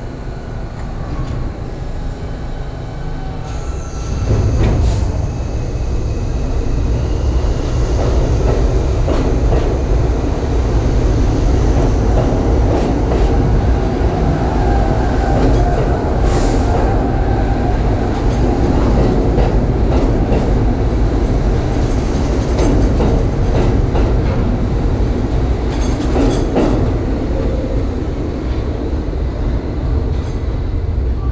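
A New York City subway train of corrugated stainless-steel cars pulling out of the station and running past, getting louder about four seconds in as it gathers speed, its wheels clattering over the rail joints with brief high squeals.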